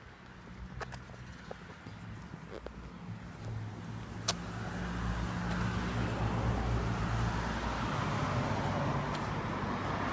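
A car approaching along the street, its engine and tyre noise growing steadily louder over several seconds. A sharp click sounds about four seconds in.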